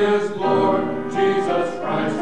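Mixed choir of men and women singing in harmony, with held notes that shift every half second or so.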